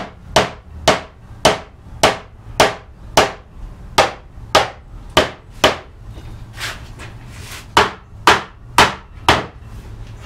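Steady mallet blows on a wooden cupboard frame, about two a second with a short pause around six seconds in, knocking its joints together for a test fit.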